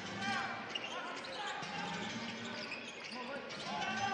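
Basketball being dribbled on a wooden court while players' sneakers give short squeaks on the floor, over a steady arena murmur.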